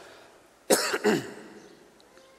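A man coughing twice into his hand close to a microphone: two short coughs about a third of a second apart, starting about two-thirds of a second in, each trailing off.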